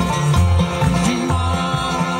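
Live bluegrass band playing: banjo picking, fiddle, acoustic guitar and an upright bass keeping a steady beat.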